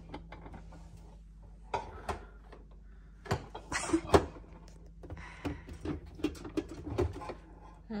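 Capsule coffee machine brewing into a cup: a low steady pump hum, with a few light clicks and knocks scattered through.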